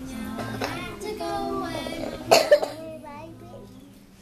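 A young boy singing, his voice holding and bending notes. A loud cough breaks in a little over two seconds in.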